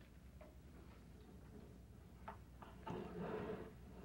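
Quiet room with a steady low hum, a few faint clicks, and a short rustle about three seconds in.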